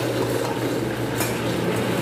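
Electric countertop blender running with a steady hum, grinding grated cassava as more is fed in a little at a time.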